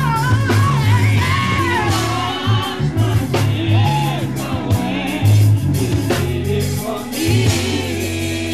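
Live gospel vocal group singing through a PA, lead and backing singers together over a band with bass and drums.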